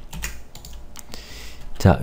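A few scattered clicks of computer keyboard keys, quiet and irregular.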